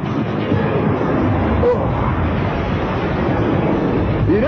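A loud, steady rushing roar from an animated action scene's sound effects, with no speech.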